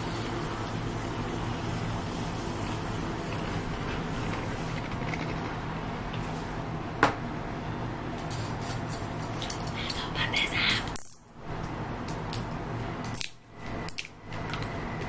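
Handheld battery milk frother whirring steadily as it whips coffee, sugar and water into foam in a glass mug. A sharp click about seven seconds in, then scattered clicks and knocks of handling near the end.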